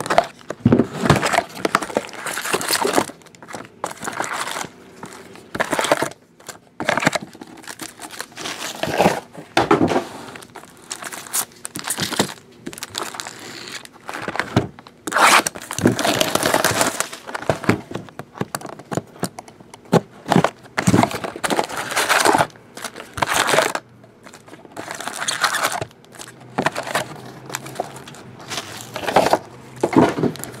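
A cardboard trading-card hobby box being cut and torn open, then its foil-wrapped card packs handled and stacked, crinkling and rustling in irregular bursts.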